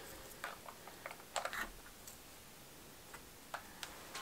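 Faint scattered clicks and light taps, about six in all, from hands setting quail eggs into the moss and twigs of a flower arrangement.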